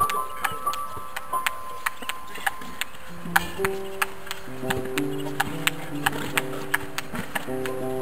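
A table tennis ball struck with a bat against a concrete practice wall, making a quick, steady run of sharp clicks, several a second, as ball meets bat and wall in turn. Music with held notes comes in about three seconds in.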